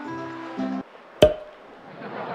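Light plucked-string background music cuts off abruptly, then a single loud, sharp hit with a short ringing tone.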